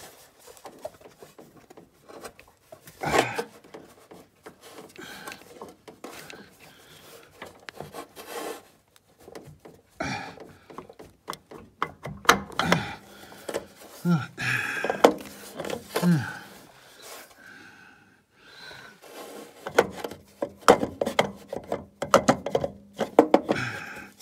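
Irregular small knocks, clicks and scraping of metal parts as a snowmobile starter motor is worked at by hand to free it from a tight engine bay, the motor and fingers bumping and rubbing against the engine casing.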